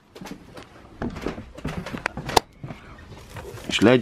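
Handling and rummaging noise: objects and cardboard boxes on a shelf being moved about, giving scattered knocks and rustling, with a sharp click about two and a half seconds in.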